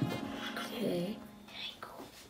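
A child's brief hushed voice about a second in, over background music that fades out.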